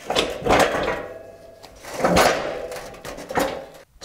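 A steel V-blade snow plow being shoved across a concrete garage floor: two rough scraping drags, the second about two seconds after the first.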